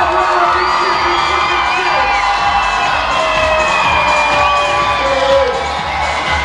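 A large crowd of children cheering and shouting over loud music from a sound system.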